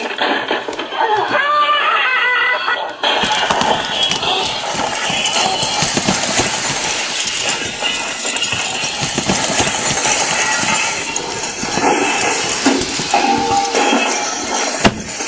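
Voices in a scuffle for the first few seconds, then, from about three seconds in, dense dramatic music mixed with crashing and knocking noise.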